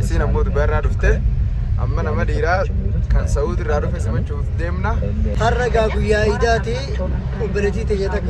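A man talking inside a car's cabin over the steady low rumble of the car on the road.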